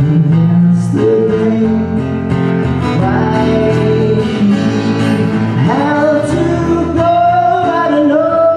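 A male singer with acoustic guitar performing a song live at a close microphone. He holds long, wavering notes over the guitar chords, and his voice climbs to a higher held note about six seconds in.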